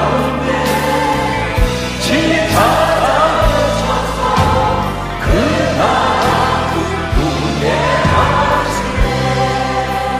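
A live church praise band and choir singing a Korean worship song, the voices carried over sustained bass and keyboard with a steady kick-drum beat. The sung line is "우리 인생가운데 친히 찾아오셔서… 그 나라 꿈꾸게 하시네".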